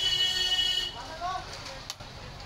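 A loud, steady buzzing tone, held for about a second and then cutting off, followed by brief voices and a single sharp click near the end.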